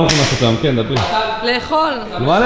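A sharp whoosh sound effect that starts suddenly and fades over about a second, over a man talking.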